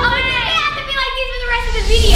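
Several girls' voices at once, drawn-out and sliding in pitch, calling out together without clear words.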